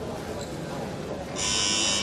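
A buzzer sounds for about a second near the end, over the steady murmur of a sports hall.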